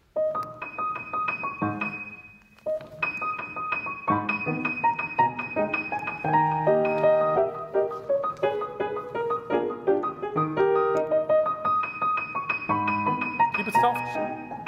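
Steinway grand piano played: a quick passage of many notes with a high D sharp repeated over it, starting at once, breaking off briefly about two seconds in, then running on.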